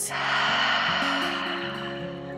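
A long breathy sigh, air exhaled through the open mouth, fading out over about two seconds, over soft background music.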